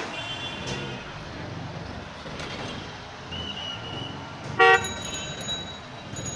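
Street traffic with vehicle horns sounding over a steady road rumble. A thinner high horn holds for about a second around the middle, then a short, loud honk comes about two-thirds of the way in.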